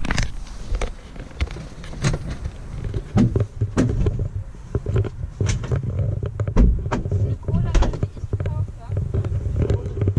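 Indistinct voices close by, with repeated knocks and bumps in the helicopter cabin.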